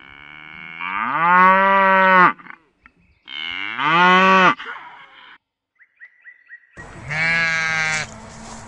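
Domestic cow mooing: two long moos, the first rising in pitch as it swells, with a further call starting near the end.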